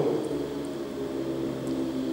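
A steady low hum made of several held pitches, with no breaks or rhythm. The end of a man's spoken word fades out at the very start.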